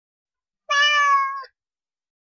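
A single cat meow, held at a fairly steady pitch for under a second, starting a little under a second in.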